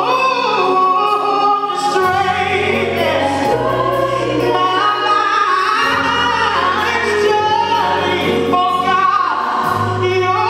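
A woman singing a gospel solo through a microphone, her voice gliding and bending between long held notes, over instrumental accompaniment whose low bass note changes every couple of seconds.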